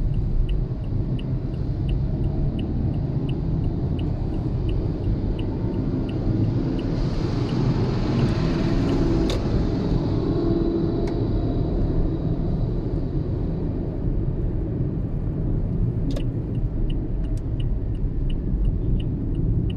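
Steady low rumble of road and engine noise heard inside a moving car. A hiss swells up around the middle, and faint even ticking, about two a second, runs at the start and again near the end.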